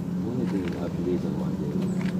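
A Honda CR-V's engine idling steadily, a low even hum heard from beneath the car.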